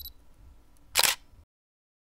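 Camera shutter sound effect: a faint blip at the start, then a single sharp shutter click about a second in.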